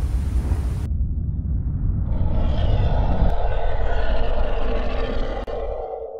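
Outro sound effect under the channel logo: a deep rumble, joined about two seconds in by a higher, steady rushing whoosh that carries on alone after the rumble drops away.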